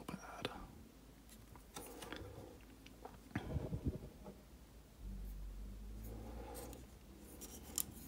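Faint scattered clicks and rustles of a plastic Transformers action figure being handled and turned over in the hands.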